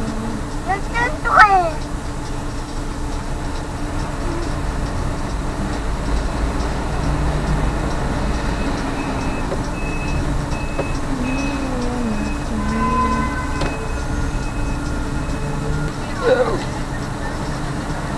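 Steady low rumble inside a stopped taxi's cabin: the engine idling with street traffic outside. Brief voice sounds come about a second in and again near the end.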